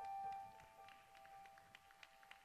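Piano accompaniment: a few high notes struck just before, with one held tone fading away over the first half-second into near silence, broken by faint light ticks.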